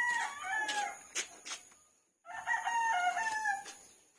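A rooster crowing twice: one long crow ending about a second in, and another from a little past the middle to near the end.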